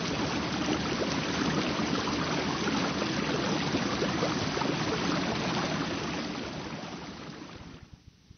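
Swiftly running river water, a steady rushing flow that fades out over the last couple of seconds.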